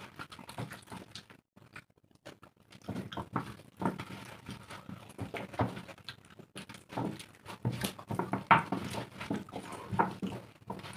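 Wet mouth sounds of two people eating soft khichdi by hand: irregular slurps, smacks and chewing, with fingers wiping the steel plates. There is a brief lull about two seconds in, and the loudest slurp comes near the end.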